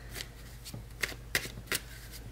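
A tarot deck being shuffled by hand: a run of short, sharp card snaps, about five in two seconds, irregularly spaced.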